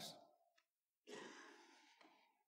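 Near silence, with one faint breath from a man about a second in.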